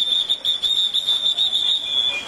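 A police whistle blown in one long, high, trilling blast that stops just before the end.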